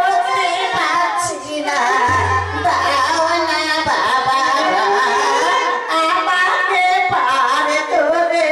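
A high voice singing a Bengali Manasa devotional song with instrumental accompaniment, and a low held bass note in the middle.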